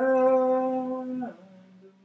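A man chanting a mantra, holding one long steady sung note that slides down in pitch a little after a second in and fades to a faint low hum.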